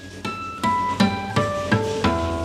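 Acoustic guitar natural harmonics at the fifth fret, the strings plucked one at a time from high to low. There are about five or six clear, ringing tones, each a step lower than the last and about a third of a second apart.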